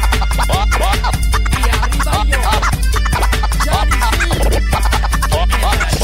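DJ mix music with a steady heavy bass beat and turntable scratching over it in quick back-and-forth sweeps.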